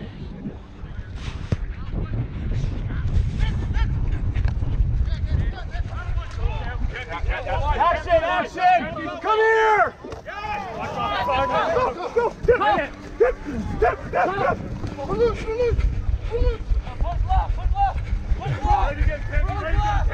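Wind rumbling on a body-worn camera's microphone, with unclear shouted voices of rugby players in the middle of the stretch.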